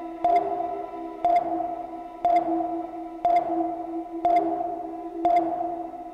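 Sonar-like electronic ping sound effect, a sharp click and a held tone repeating about once a second, six times, over a steady low drone.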